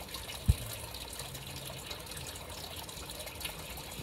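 Steady rushing background noise, like running water, with one short low thump about half a second in.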